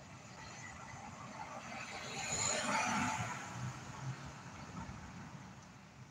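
A car passing by outside, its noise swelling to a peak about halfway through and then fading away.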